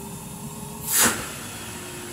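A Numatic Henry HVR160 vacuum cleaner, refitted with a replacement motor, running steadily on its full setting with a faint steady whine. About a second in there is a brief, loud rush of air.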